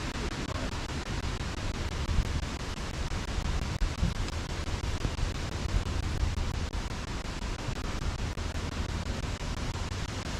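Strong wind blowing across the microphone: a steady rushing noise with heavy low buffeting that swells in gusts, loudest around two and four seconds in.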